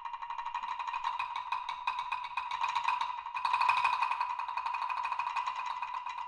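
Two low wood blocks struck in rapid, even runs of repeated notes, the two parts interlocking and swelling to their loudest a little past the middle before easing back.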